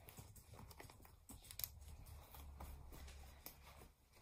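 Near silence: faint rustling of a wool coat and a few soft clicks as its metal snap buttons are pressed shut.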